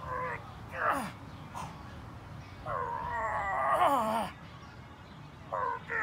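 A man's strained yells while pressing a heavy axle bar overhead: short cries that drop in pitch near the start and about a second in, then a long wavering cry in the middle and another short one near the end.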